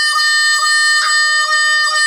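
Blues harmonica holding one long, steady note, with a slight pulse in it about twice a second and a brief accent about a second in.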